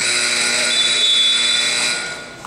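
Gym scoreboard buzzer sounding one loud, steady, buzzy blast of about two seconds, starting and stopping abruptly, signalling the end of a period of play.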